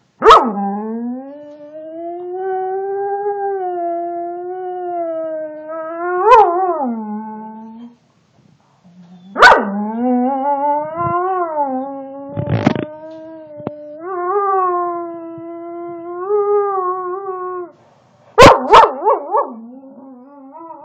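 A collie-type dog howling: two long, wavering howls of about eight seconds each, followed by a quick run of short yips near the end.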